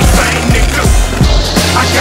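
Hip-hop backing track with a steady beat, over the sound of a skateboard's wheels and trucks grinding along a stone ledge.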